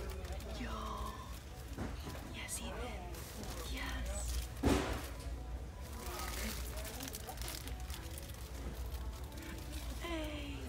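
Plastic-wrapped paper towel packs being handled and shifted on a shelf, with soft rustles and one sharper crinkle or thump a little before halfway, over low voices and store background noise.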